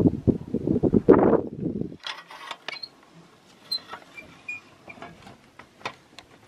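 Wind buffeting the microphone at an open window: a loud, gusty low rumble that cuts off abruptly about two seconds in. After that it is quiet, with scattered small clicks and light rustles.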